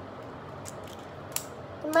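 Small plastic clicks of a LEGO-built butterfly knife being flipped and caught in the hand: a faint click, then one sharp click about a second and a half in.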